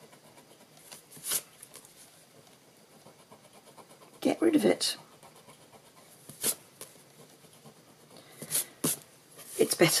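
Block ink eraser rubbing on cardstock to lift an ink smudge, heard as a few brief, faint scratchy strokes with quiet between. A short vocal sound comes about four seconds in.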